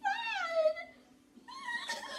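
A boy's high-pitched wordless cry, falling in pitch and lasting under a second, then a second, rougher cry near the end.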